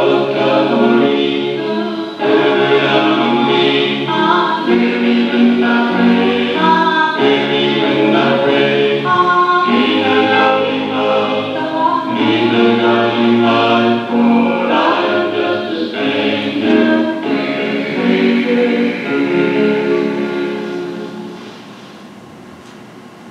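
Choir singing a gospel-style song, fading out near the end.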